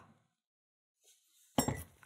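Faint handling of small metal lock parts, then a single sharp metallic clink with a brief ring about one and a half seconds in, from a brass lock plug and steel tweezers.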